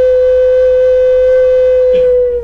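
Wooden Native American-style flute holding one long steady note.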